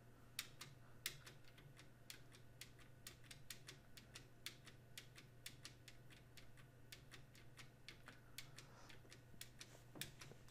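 Faint, irregular clicking of computer keys, two or three clicks a second, over a low steady hum.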